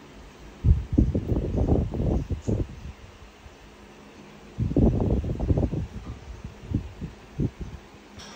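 Baby monkey sucking milk from a baby bottle: two bouts of rapid, muffled low sucking sounds, then a few single sucks near the end.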